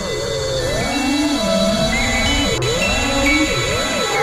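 Chameleon FPV quadcopter's brushless motors and propellers whining, the pitch swooping up and down with the throttle about once a second.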